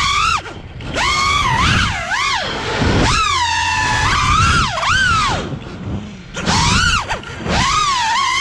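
Five-inch FPV racing quad's Axisflying AF227 1960kv brushless motors and three-blade props whining. The pitch swoops up and down sharply with the throttle, breaking off briefly where the throttle is cut: once just after the start, again near the middle, and for a longer moment a little after.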